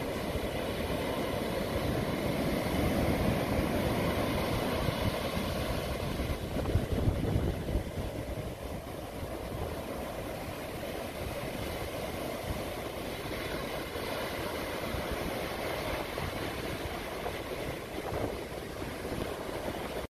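Surf on a sandy beach: waves breaking and washing up the sand as a steady rushing noise that swells louder a few seconds in and then eases.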